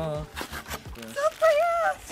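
Wordless voices: a held low vocal tone that ends just after the start, then a high, wavering voice in the second half. A few faint clicks of cardboard packaging being handled come between them.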